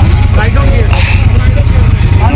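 A loud, steady low rumble, with people talking over it.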